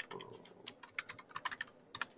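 Computer keyboard typing: a faint, quick, irregular run of keystrokes.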